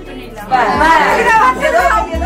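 Voices talking over background music with a deep, sliding bass; the voices start about half a second in, after a brief lull.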